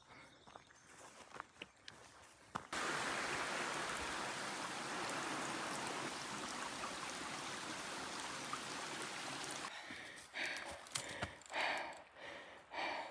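A small rocky creek running, a steady rush of water that starts abruptly a few seconds in and cuts off sharply near the end. Faint footsteps on the trail come before and after it.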